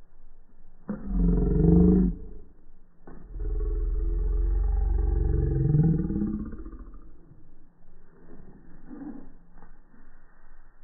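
English cocker spaniel puppy growling as it bites and tugs at a rope toy: a growl about a second long, then a longer one of about three seconds that rises in pitch before it fades.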